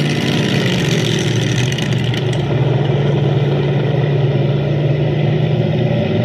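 A vehicle engine running steadily at idle, with no revving, heard through a computer's speakers.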